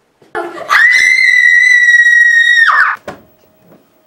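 A person's loud, high-pitched scream that sweeps up at the start, is held steady for about two seconds, then drops away.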